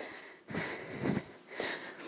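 A woman breathing hard while exercising: two breaths, about a second apart.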